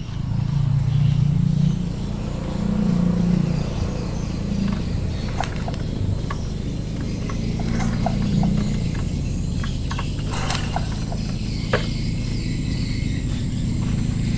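Honda Supra 125's single-cylinder four-stroke engine turned over slowly with the kick-starter, in several strokes, to make the stator's output wire spark against the frame as a test of the missing ignition. A few sharp clicks come in between the strokes.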